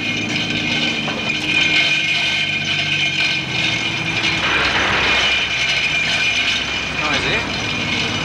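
Tower crane machinery running with a steady whine as it hoists a personnel cage; the tone changes about halfway through.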